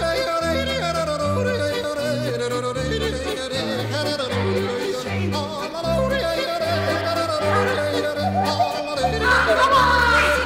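Background music: a yodeling singer over a bouncing bass line.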